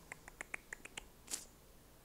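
Faint, rapid clicking on a laptop, about seven clicks in the first second, followed by a single short breathy hiss.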